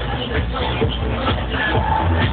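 Electronic dance music from a DJ set, played loud over a festival sound system, with heavy, steady bass.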